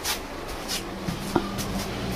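A sliding paper room door (fusuma) being moved along its track: two short swishes and a light click.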